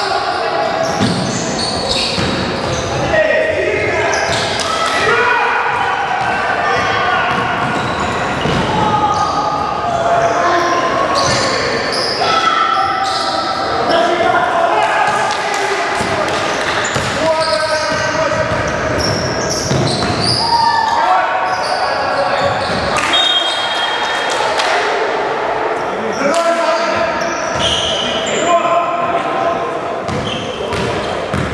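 Indoor basketball game: a basketball bouncing on the gym floor as players dribble, with voices in the echoing hall throughout.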